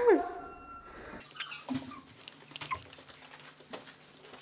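A short whine that slides down in pitch right at the start, the loudest sound here, followed by scattered light knocks and rustling.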